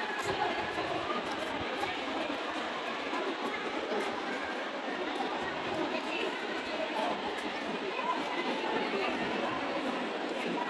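Crowd chatter: many people talking at once in a large indoor hall, a steady babble of overlapping voices with no single voice standing out.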